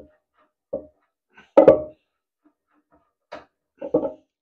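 A handful of short knocks and clunks, the loudest about a second and a half in, from hands and a tool working at the toilet cistern's freshly disconnected cold inlet fitting.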